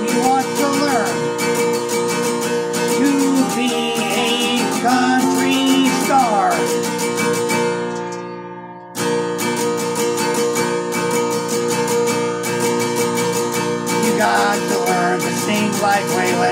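Takamine acoustic guitar strummed steadily, with a man's voice singing over it in stretches. About eight seconds in, the sound fades down and cuts back in abruptly a second later.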